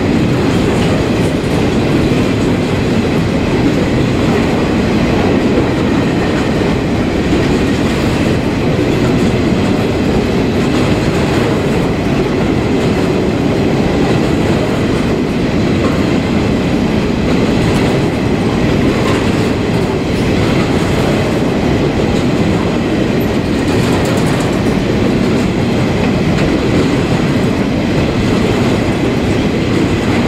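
A long freight train of hopper wagons rolling past at speed, its steel wheels running steadily over the rails.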